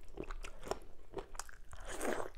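Close-miked chewing of soft food, with irregular wet mouth clicks, and a louder smacking sound near the end as the next handful of soup-soaked fufu goes into the mouth.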